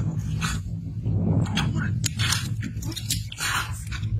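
Water splashing in several short bursts, over a steady low hum.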